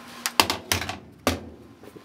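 Plastic washer agitator hub being handled: a quick run of sharp clicks and knocks in the first second and a half.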